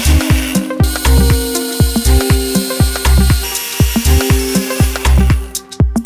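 Electric blender motor running as it blends a milkshake, switched on right at the start and cutting off just before the end. Background music with a steady beat plays under it.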